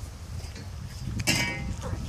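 Horse rolling on its back in an arena's sand, its body scuffing and rumbling on the ground, with a short voiced sound about halfway through.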